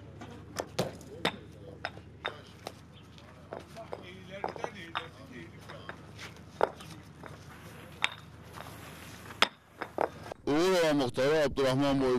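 Concrete interlocking paving stones set by hand, clacking and clinking against one another in sharp, irregular knocks. Near the end a man's voice takes over.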